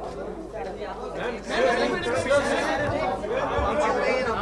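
Overlapping chatter of several people talking at once, louder from about one and a half seconds in.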